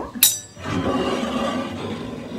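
A single sharp clink of the metal baking tray just after the start, followed by over a second of steady, rough noise as the hot focaccia is handled off the tray.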